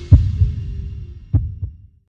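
Closing bars of a TV news theme tune: deep bass hits over a held tone, fading out near the end.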